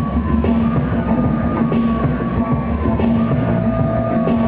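Live electronic-folk music: an electric guitar playing over a laptop-programmed beat, with a held low bass note and a steady pulsing rhythm.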